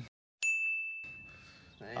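A single high ding that starts sharply about half a second in and rings out, fading away over about a second and a half.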